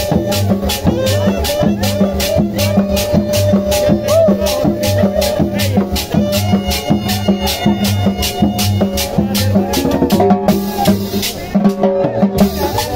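Live cumbia band playing: a saxophone melody over congas, drums and cymbals, with pulsing bass notes and a steady high percussion beat of about four strokes a second. The high percussion briefly drops out a little after ten seconds in.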